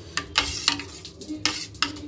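A metal spoon stirring yogurt topped with a cumin-seed tempering in a stainless steel pot, knocking and scraping against the pot's sides several times at an irregular pace.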